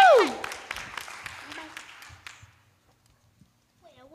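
Audience clapping that dies away over about two seconds, with the end of a long 'woo' cheer sliding down in pitch at the very start.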